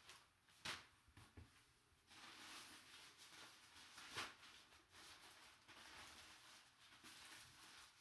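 Faint rustling of a cloth drawstring bag and plastic wrapping being handled, with two sharp ticks, one early on and one about four seconds in.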